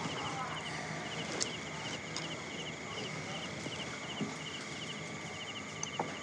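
Crickets chirping in short, regular groups about twice a second over faint room tone, with a couple of faint clicks.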